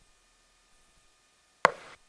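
Near silence, then a single sharp click near the end, followed by a brief faint hiss that cuts off suddenly.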